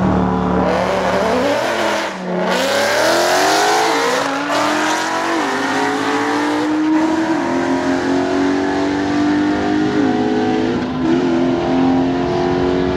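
A Lamborghini Huracán Performante's V10 and a Ford Mustang making a side-by-side drag-strip launch at full throttle. The revs are held steady for about the first second, then the engine pitch climbs through each gear and drops back at each upshift, several times, as the cars pull away.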